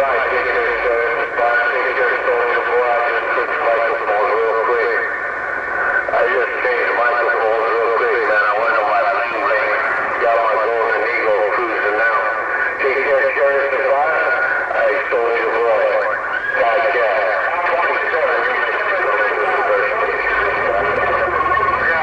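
A distant station's voice coming in over a Uniden HR2510 10-meter radio's speaker, talking without a break, narrow and telephone-like with band noise under it.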